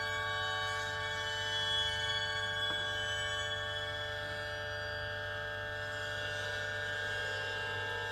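Experimental live music: a sustained drone of many steady overlapping tones with a low hum beneath, holding without a beat, broken once by a faint click a little under three seconds in.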